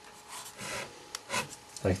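Marker pen tip scratching across paper in a few short strokes, drawing a closing bracket on a written equation.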